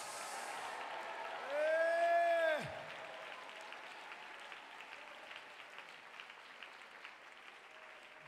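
Congregation applauding, the clapping dying away gradually over several seconds, with one long drawn-out voice call about two seconds in.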